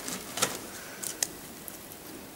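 Handling noise as soil in a plastic box is worked by hand: about five sharp clicks and light knocks with faint rustling. The loudest clicks come about half a second in and just after a second in.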